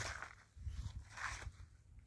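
Faint scuffing and rustling of a person walking on dry soil among crop rows: a few soft, short scuffs over a low rumble.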